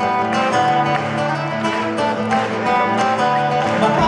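Live rock band playing, electric and acoustic-sounding guitars to the fore in a passage without singing, heard through the concert hall's sound.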